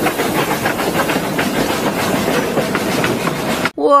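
Steam locomotive running along the track: a steady loud hiss of steam with fast rattling clatter. The sound cuts off abruptly near the end.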